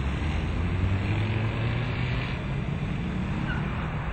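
Loud road traffic noise with a deep engine hum from passing vehicles, strong enough to push a sound level meter reading up to about 85 decibels.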